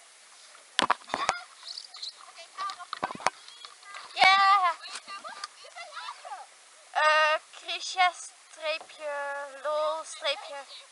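Girls' voices calling out across the water several times, with a few sharp knocks about a second in and again around three seconds.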